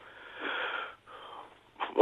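A man breathing heavily over a telephone line: two breaths with no voice in them, the first longer and louder, the second shorter and fainter. Speech begins at the very end.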